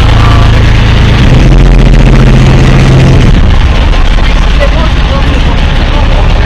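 Small boat's motor running at low speed, its note changing about a second and a half in and again a little after three seconds in.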